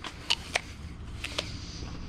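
A person biting into and chewing a crisp fresh apple, with a handful of short sharp crunches in the first second and a half.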